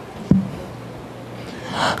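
A woman's sharp in-breath into a handheld microphone near the end, just before speech resumes, after a brief knock about a third of a second in.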